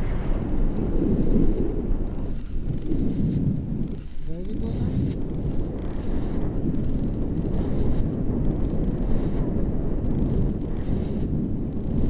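Wind rushing over the camera microphone in flight under a paraglider, a steady low rush that rises and falls, with a thin high hiss coming and going.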